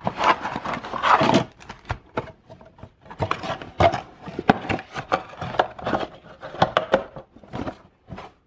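Cardboard trading-card blaster box being opened and handled with cotton-gloved hands: an irregular run of taps, scrapes and rustles as the sleeve and flaps are pulled and the box is turned over.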